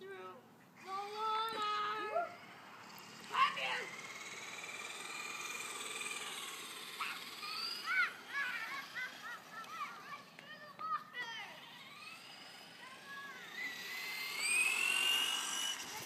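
Young children shrieking and calling out excitedly, with long high squeals that glide in pitch, one rising near the end.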